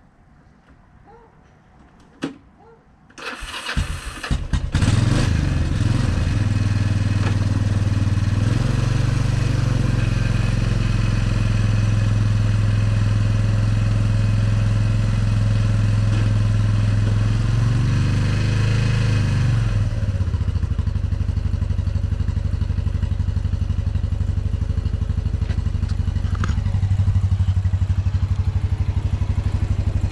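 2002 Kawasaki Prairie 300 ATV's single-cylinder four-stroke engine being started about three seconds in: it cranks for about a second, catches and settles into a steady run. It runs a little faster while the ATV is moved up to the plow, then rises briefly and drops back to a lower idle about twenty seconds in.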